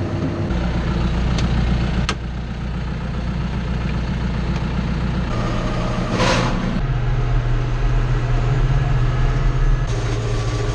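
Tractor diesel engine running, its tone changing abruptly a few times, with a brief hissing rush about six seconds in.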